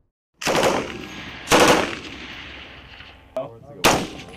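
Rifle gunfire on an outdoor range: two loud shots about a second apart, each trailing off in a long echo, then a fainter crack and another sharp shot near the end.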